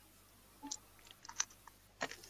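A few faint, short clicks and ticks, spaced irregularly.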